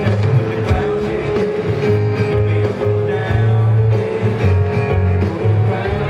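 Live band playing an instrumental passage: acoustic and electric guitars over deep bass notes, with piano and drums.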